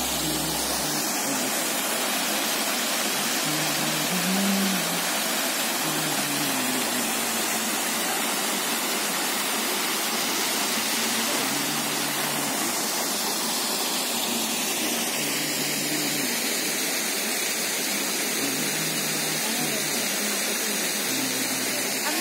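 Mountain waterfall cascading down rock tiers: a loud, steady rush of falling water.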